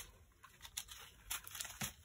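Faint crinkling of small plastic zip-lock bags of diamond painting drills being handled and set down, as a few brief rustles.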